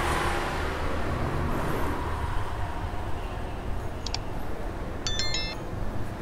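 Steady low background rumble, then a faint click about four seconds in and a short bright chime of several stepped high tones about a second later: the sound effect of a subscribe-button animation.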